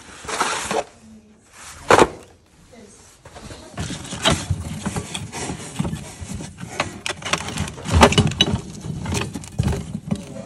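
Rummaging through a cardboard box of odds and ends: rustling and handling noise, with a sharp knock about two seconds in, then a run of irregular clinks and knocks as clay pottery pieces and a metal tray are shifted about.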